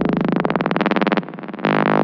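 Psytrance breakdown: the kick drum and bass drop out, leaving a rapidly pulsing electronic synthesizer line. The synth line dips briefly a little past halfway, then comes back.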